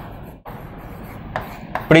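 A pen writing on a digital board: faint scratching strokes with a few small taps as a word is handwritten.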